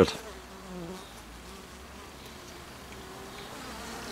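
A dense cluster of honeybee workers buzzing steadily and fairly quietly as they crowd around their queen.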